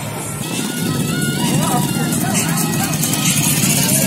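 Busy street procession: motorbike engines passing close, voices, and music playing at the same time, all getting louder about a second in.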